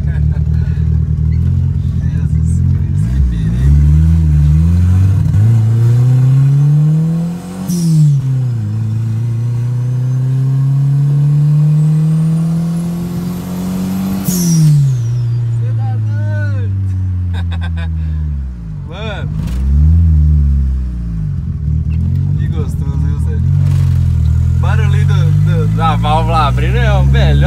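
Turbocharged VW Voyage engine with a straight-through exhaust, heard from inside the cabin while accelerating hard through the gears. The revs climb twice and drop sharply at each upshift, about 8 and 14 seconds in, each time with a short hiss. After that the engine pulls on at lower, steadier revs.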